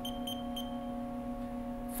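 Haas CNC control panel beeping as keys are pressed to select a probe action: three short, high beeps in quick succession in the first second. A steady hum runs underneath.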